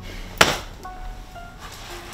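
One sharp hit about half a second in, in a scuffle between two men, over quiet film score with held tones.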